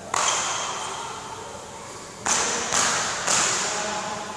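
Badminton racket striking a shuttlecock hard, four sharp hits: one at the start and three quick ones about half a second apart near the end. Each crack rings on in the echo of a large sports hall.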